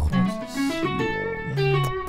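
Electric guitar playing a short phrase of single notes that move quickly from one pitch to the next, with a lower note held briefly near the middle.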